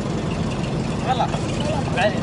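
Dromedary camels mating: a steady, rough rumbling noise with a brief higher call about a second in.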